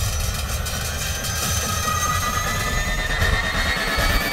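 Sound effect of a large spiked blade machine running: a dense mechanical grinding din, with a whine that rises slowly through the second half.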